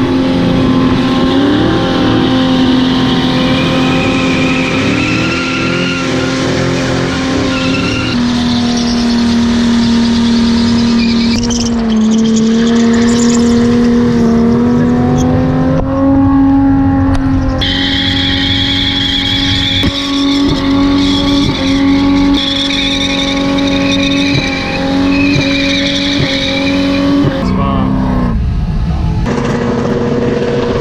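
Manual Ford EL Falcon's SOHC straight-six held at high revs through a long burnout, a steady engine note that jumps to a new pitch a few times, with the spinning rear tyres squealing over it.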